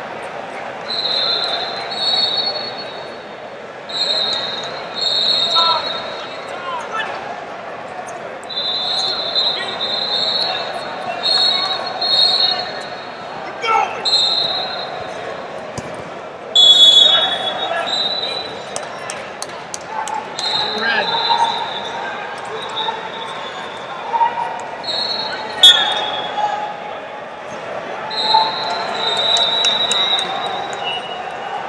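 Ambience of a busy multi-mat wrestling tournament in a large echoing hall: voices shouting and chattering, with short high referee whistle blasts again and again from the mats. A few sharp slaps or claps stand out, the loudest just past halfway and near the end.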